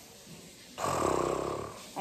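A girl's low, rattly groan of frustration, lasting about a second in the middle.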